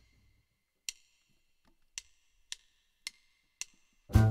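Count-in of a jazz backing track: five sharp percussive clicks, the first two about a second apart, then three more at twice that speed, setting the tempo for the minor 2-5-1 that follows.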